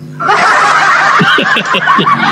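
A person laughing loudly over an online video call, starting a moment in and going on without a break.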